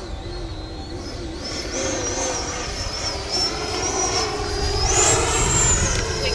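E-flite Viper's 90 mm electric ducted fan, driven by an 8-cell 1500kv motor, whining high overhead during a slow high-alpha pass. The whine wavers in pitch with the throttle, then climbs and holds higher near the end as power comes up to fly out of the pass.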